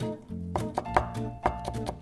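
Chef's knife finely mincing white Japanese leek (negi) on a cutting board: a quick run of knife taps, several a second, the sharpest about a second in, over background music.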